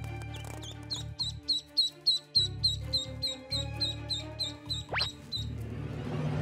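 Duckling peeping repeatedly: short, high, falling peeps, about three or four a second, over background music.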